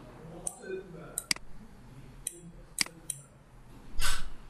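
Computer mouse clicking: about six sharp, short clicks at irregular intervals, two of them in quick succession like a double-click.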